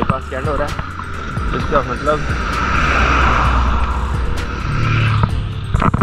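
A road vehicle passing on wet asphalt: tyre hiss and engine rumble swell to a peak about halfway through, then fade.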